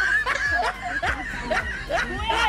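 People laughing in short chuckles and snickers.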